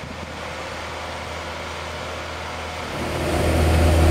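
Snorkel A62JRT articulated boom lift's four-cylinder turbocharged Kubota diesel engine running as the machine drives over rough ground on hydrostatic four-wheel drive. A steady low engine note that grows louder about three seconds in as the machine comes closer.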